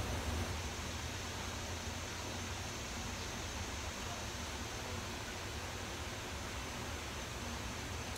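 Steady background hiss with a low hum underneath, even throughout, with no distinct sounds standing out.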